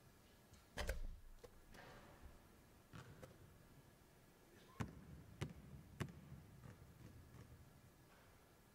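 A basketball free throw: a heavy thud as the ball reaches the hoop about a second in, then a few lighter bounces, and three sharp basketball dribbles on the hardwood floor about half a second apart as the shooter runs her pre-shot routine.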